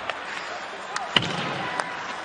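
Ice hockey arena ambience: a steady crowd murmur with a few sharp knocks of sticks on the puck during play, the loudest about a second in.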